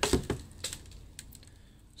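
A potted root ball being handled as the plastic nursery pot comes off: a few sharp crackles and clicks of plastic, soil and roots, most of them in the first second, then quiet.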